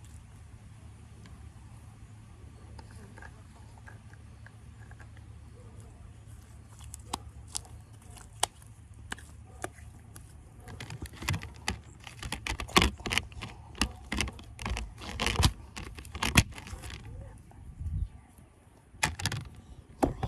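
Melted, sticky slime being squeezed and pulled apart by hand, giving a run of short wet clicks and crackles that grows dense in the second half. A steady low hum lies under the first half.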